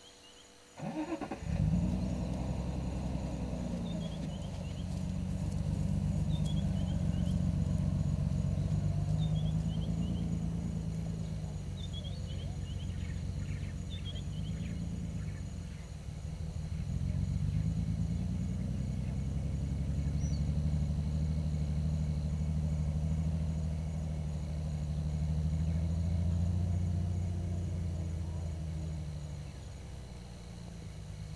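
A vehicle engine starts about a second in and keeps running at low revs, its pitch rising and dipping slightly now and then. Faint short high chirps sound now and then in the first half.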